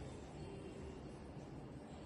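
Faint steady room tone: a low hum and soft hiss with no distinct events.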